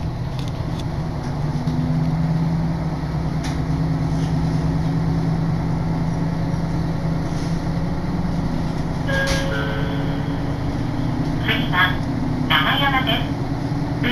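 Interior sound of a diesel railcar on the non-electrified Soya Line pulling away from a station: a steady engine hum, rising as it takes power, over the running of the train. About nine seconds in there is a short tone, and near the end an onboard announcement begins.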